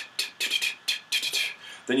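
A quick rhythmic run of short, unvoiced 't' sounds made with the tongue and lips, a tonguing rhythm for brass playing tapped out with the mouth like vocal percussion.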